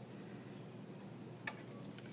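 Quiet room tone with one short, sharp click about one and a half seconds in.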